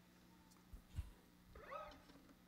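Near silence: quiet room tone with a low hum, a soft low thump about a second in, and a short pitched sound with a bending pitch near the end.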